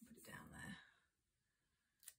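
A woman's voice, faint and whispered, murmuring for about a second.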